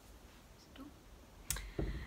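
Quiet room tone, then a single sharp click about one and a half seconds in, followed by a brief soft low bump.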